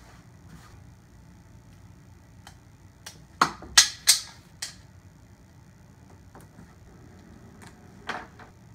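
Four sharp clicks in quick succession about three and a half seconds in, made by a small object handled in front of the chest, over quiet room tone.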